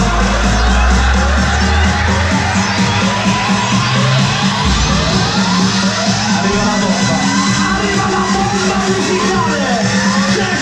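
Loud electronic dance music from a live DJ mix played over a club sound system. The deep bass drops out after about two seconds, and a rising sweep builds through the second half.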